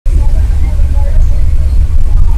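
Loud, steady low rumble of a moving bus heard from inside the cabin: engine and road noise.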